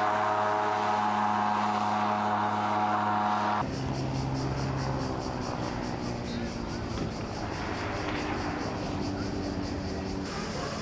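A small engine running with a steady drone, cut off abruptly about three and a half seconds in. It gives way to a quieter shoreline ambience with a low hum and a fast, even chirring high up.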